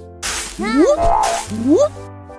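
Cartoon sound effect for sand flying up into a castle: a hissing whoosh that starts about a quarter second in, with two quick rising glides in pitch, over light background music.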